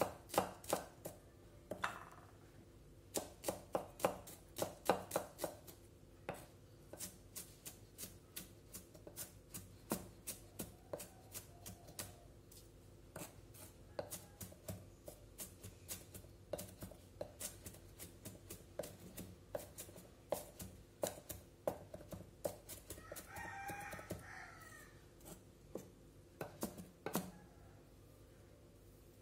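Kitchen knife mincing shallots on a wooden cutting board: quick, irregular runs of sharp chops against the wood, with short pauses between the runs.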